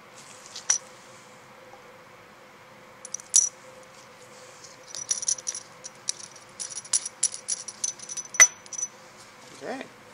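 Small clicks and clinks of lab glassware being handled: one or two at first, then a quick run of light ticks from about five to nine seconds in, with one sharper clink just after eight seconds.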